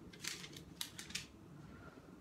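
A few soft clicks and rustles in quick succession in the first second or so, the sound of a phone being handled at close range.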